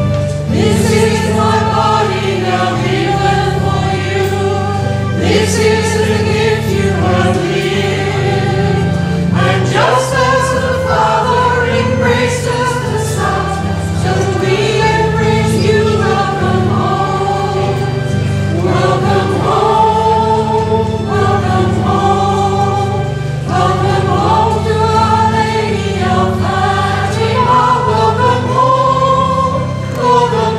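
Choir singing a hymn in long held notes over a low, sustained instrumental accompaniment.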